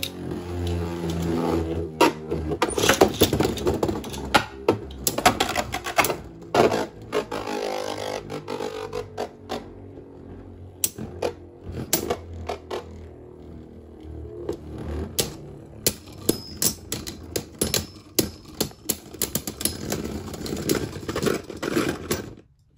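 Two Beyblade Burst DB tops spinning against each other in a plastic stadium: a steady whirr of the tops running on the stadium floor, broken by many sharp clacks as they collide. The clashes come thickest in the first several seconds and again over the last several.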